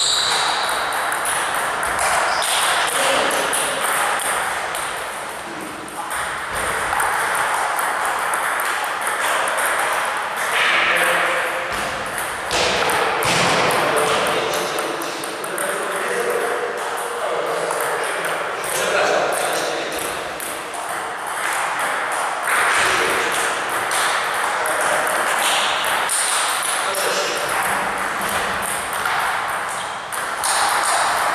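Table tennis balls clicking on paddles and tables in quick irregular rallies, from several tables at once, with indistinct voices in the background.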